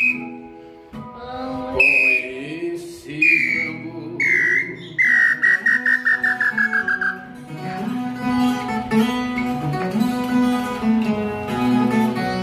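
Wooden bird-call whistle (pio) blown over a strummed viola caipira. It gives a few separate short whistled notes, each sliding down in pitch, then a quick run of about seven notes a second that falls steadily for two seconds. After that the viola strumming carries on alone.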